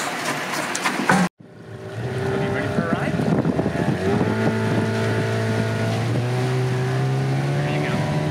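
Outboard motor of a small inflatable dinghy under way, running steadily and rising in pitch about four seconds in as it picks up speed, with wind on the microphone. A short laugh comes just before the engine sound.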